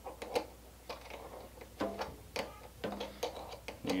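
Scattered light clicks and ticks of a threaded pushrod being turned by hand into its plastic link ends on an RC plane's aileron servo linkage, the threads biting into the plastic.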